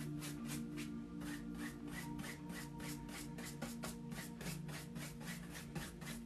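Wide bristle brush scrubbing wet oil paint on a stretched canvas, a quick even back-and-forth of about five strokes a second as the paint is blended.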